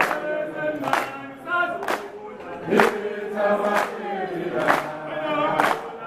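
A choir singing a song, with a sharp beat about once a second under the voices.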